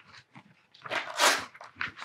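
Sheets of paper rustling and being shuffled as documents are handled, with light handling clicks and one longer rustle about a second in.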